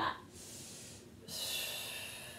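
A woman breathing audibly through her nose while holding a yoga pose: a soft breath, then a louder, longer one from a little past a second in that slowly fades.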